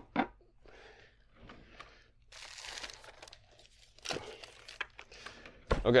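Rustling and crinkling of small items being handled at a workbench, with a sharp click about four seconds in.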